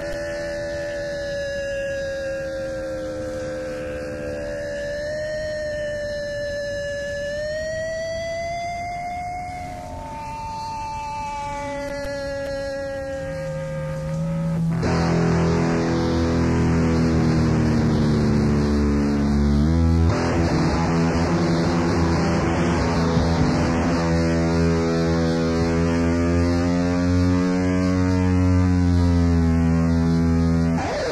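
Opening of an early-1980s Oi! punk recording. Long sustained electric guitar tones slowly bend and waver in pitch, and about halfway through the full band comes in much louder with distorted guitar.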